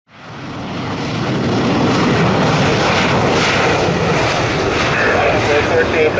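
Turbofan engines of an Embraer ERJ-145LR running at low power as the jet moves slowly on the runway: a steady rushing noise that fades in over the first second. Air traffic control radio speech begins near the end.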